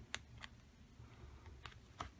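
Near silence with a few faint ticks as laminated magnet-sheet puzzle pieces are pulled apart by hand.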